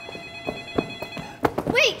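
Incoming video-call ringtone: several steady high tones sounding together, with a few light knocks underneath.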